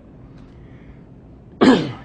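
A man clearing his throat once: a short, rough burst with a falling pitch about one and a half seconds in, after a quiet stretch of room tone.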